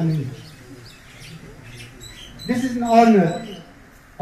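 Small birds chirping in the background, with a man's voice trailing off at the start and one drawn-out vocal sound about two and a half seconds in.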